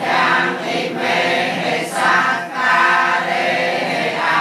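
A group of voices chanting Pali Buddhist verses in unison, in long sustained phrases with brief pauses for breath.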